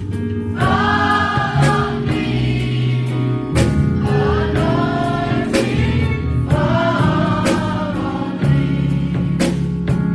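Gospel choir of women singing with band accompaniment: held bass notes under the voices, and sharp drum hits about once a second.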